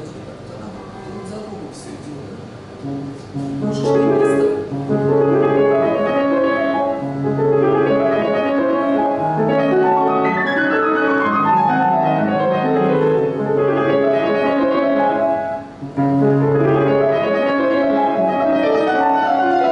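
Kawai grand piano being played in classical style. It starts about three and a half seconds in: fast running passages of notes over sustained bass notes. The playing breaks off briefly near the end, then starts again.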